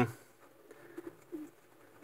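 Faint cooing of racing pigeons in a loft: two short, low coos about a second in, with little else.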